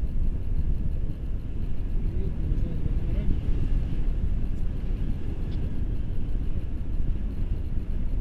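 Airflow buffeting the camera microphone during a tandem paraglider flight, a steady low rumbling rush of wind.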